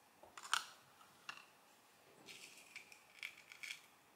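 Small metallic clicks from the opened mechanical counter's mechanism being handled: one sharp click about half a second in, another a little later, then a run of lighter clicks with a faint metallic ring in the second half.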